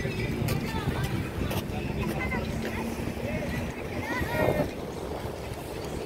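Wind noise on the microphone over outdoor harbour ambience, with a steady low hum through the first half and a few short high calls.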